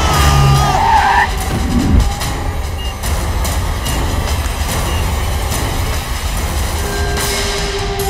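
Film-trailer sound mix: the engine and tyre rumble of a car passing over, under background music. A held musical note comes in near the end.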